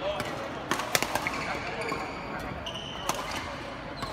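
Badminton rally: sharp hits of rackets on the shuttlecock, a cluster about a second in and another near three seconds, with shoes squeaking on the court floor in between.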